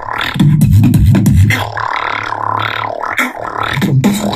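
A 13-year-old's solo beatboxing: a loud, deep humming bass line for the first couple of seconds, with sweeping wah-like vocal tones and sharp mouth clicks and snares over it, and a short break near the end.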